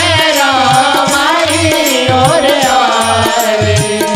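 A man singing a Hindi devotional bhajan in long, drawn-out notes, with a drum beating about twice a second beneath.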